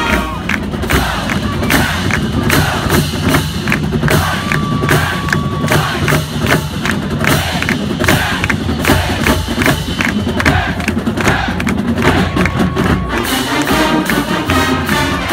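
Marching band members shouting a cheer over a quick run of drum hits while the horns rest. The brass comes back in near the end.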